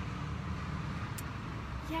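Steady low outdoor background rumble, with a brief faint tick about a second in. A woman's voice starts right at the end.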